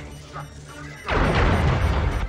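Sound effect of a starship taking a weapons hit: a loud explosive crash about a second in, with a low rumble that dies away over about a second.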